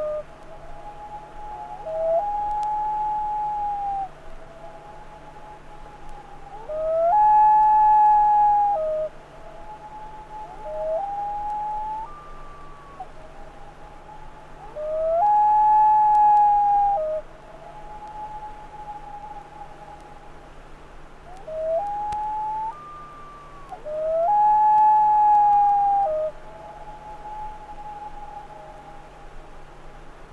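Common loons calling in long, drawn-out notes of about two seconds, each rising at the start and then held level. A loud call comes about every eight seconds, with fainter calls in between.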